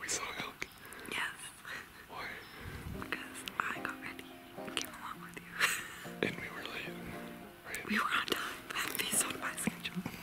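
Hushed whispering, with soft background music of held, stepping notes coming in about three seconds in.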